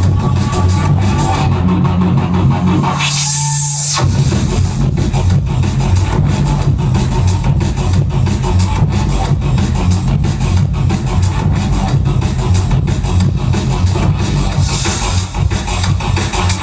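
Drum and bass DJ set played loud over a club sound system, with a heavy bassline and fast breakbeat drums. About three seconds in, the beat briefly drops out to a held bass note and a hissing sweep, then comes back in about a second later.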